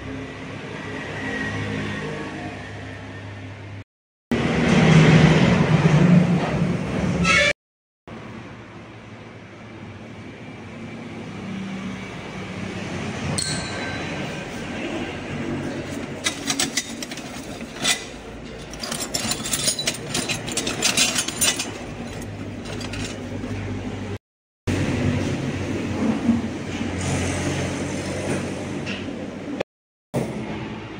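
Workshop sounds from short clips joined with abrupt cuts: a steady background hum, a few seconds of loud rushing noise, and in the middle a run of light metallic clinks and taps from steel parts being handled.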